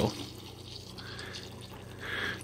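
Evapo-Rust rust remover pouring in a thin, steady stream from a jug into a plastic bucket, splashing into a foamy pool of the liquid over submerged steel spindles.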